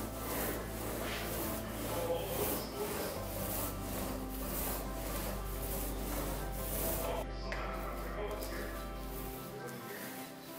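A small paint roller rubs wet paint across a flat wooden door in repeated back-and-forth strokes.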